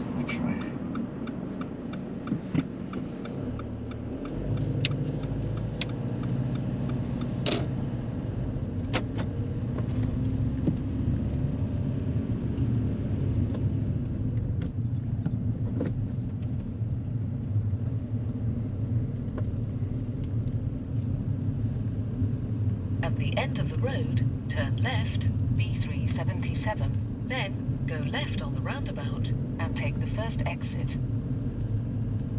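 Car cabin noise while driving: a steady low rumble of engine and tyres on the road, which grows louder after about four seconds as the car gets under way. There are a few sharp clicks in the first several seconds.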